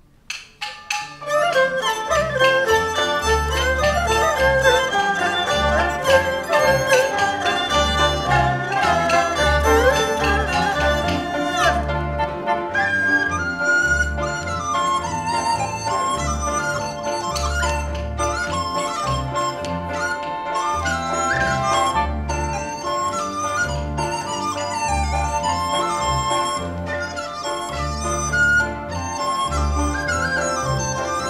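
Chinese traditional orchestra starting suddenly less than a second in: a dizi bamboo flute leads a gliding melody over bowed erhu-family strings, with a pulsing low beat and many sharp percussive strikes in the first half.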